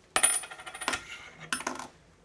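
Metal coins clinking and ringing with a high, thin tone as they are handled. The clinking comes in two bursts, the second starting about a second and a half in.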